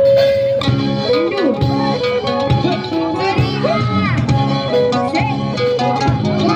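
Street band playing live on acoustic guitars: a long held note stops about half a second in, and the band starts a song with a lead melody over strummed chords.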